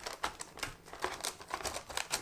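Bottom of a glass pressing crushed biscuit crumbs into a paper-lined milk carton, packing the base of a cheesecake. It comes as a quick, irregular series of short presses, about five a second.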